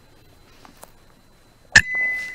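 A .177 FX Dreamline PCP air rifle fires once near the end: a sharp crack, followed by a high ringing tone that lingers. A couple of faint clicks come before the shot.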